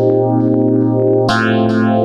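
Korg MS2000 virtual-analog synthesizer playing a held chord over a steady bass note, with a sweeping modulation running up and down through the chord and bright pulses repeating on top. A new chord comes in about one and a half seconds in with a quick upward sweep.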